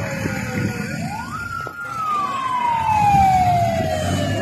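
Police siren wailing through one slow cycle: the pitch falls, rises sharply a little past one second, holds briefly, then falls slowly, over the low running noise of the convoy's vehicles.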